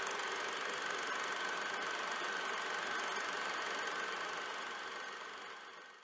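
Film projector sound effect: steady mechanical running with a faint high whine, fading away over the last second or so.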